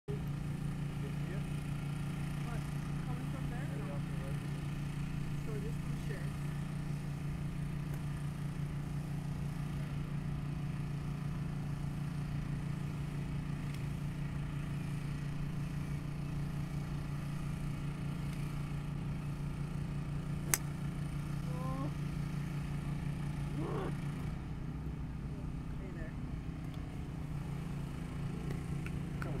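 A steady low mechanical hum throughout, with a single sharp click about two-thirds of the way through: a fairway wood striking a golf ball off the tee.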